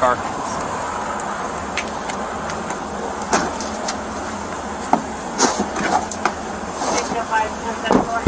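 Handling noise on a police body camera: a steady hiss with a scattering of sharp clicks and knocks as a handcuffed person is seated in the back of a patrol SUV.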